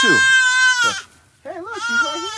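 Young goat kids bleating: one long, high, steady bleat in the first second, then a second, wavering bleat starting about a second and a half in.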